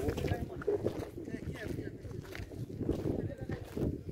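Indistinct voices of people talking nearby, with a few sharp knocks, the clearest near the end.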